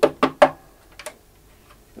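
Fingers tapping the wooden soundbox of a hurdy-gurdy: three quick knocks in the first half-second, the third the loudest, then a faint tap about a second in.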